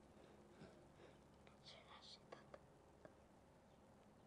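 Near silence: faint room tone with a brief faint whisper a second and a half to two seconds in, and a few soft clicks just after.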